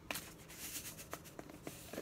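Salt pouring from a canister onto cut lemon and lime wedges: a faint patter of grains with a scatter of light ticks.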